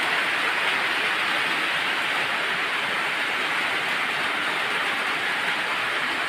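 Steady rain falling, an even hiss that holds at one level without a break.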